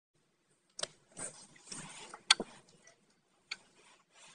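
A few sharp clicks, the loudest a quick double click a little past the middle, with short soft rustles between them.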